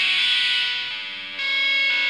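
Overdriven Stingray played through a Fault V2 overdrive pedal with its High slider pushed up, giving a bright, cutting drive tone. One chord rings and fades, and a new chord is struck about one and a half seconds in.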